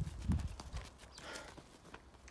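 A few soft, low thumps of footsteps on grass and dirt, strongest in the first half second, then only faint outdoor background.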